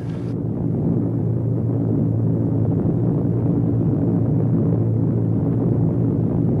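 Steady low drone of a four-engine bomber's piston engines in flight, heard on an old archival film soundtrack that sounds muffled, with no high end.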